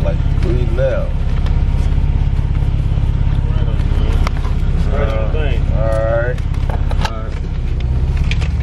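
Car interior: steady low engine and road rumble from a moving car, which dips briefly about seven seconds in. Voices talk or sing over it.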